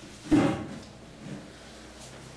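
A hard thump about a third of a second in, a book set down on the tabletop, with a softer knock about a second later.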